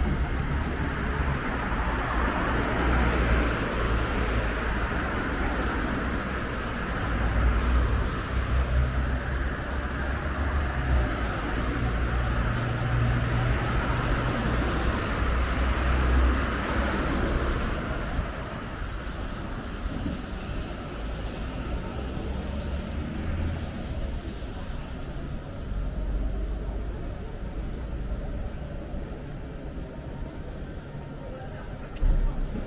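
Road traffic on a multi-lane city street: cars passing with a steady tyre and engine rush, louder for the first half and easing off after about eighteen seconds.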